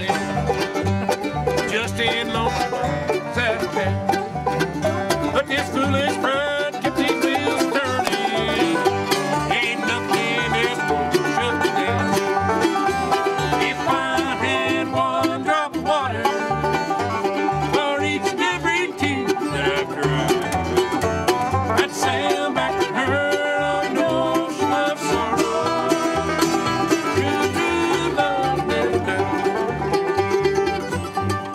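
Bluegrass jam on acoustic instruments: a banjo picking rapid rolls over strummed acoustic guitars and a mandolin, with a steady beat.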